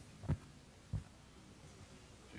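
Two dull, low thumps about two-thirds of a second apart.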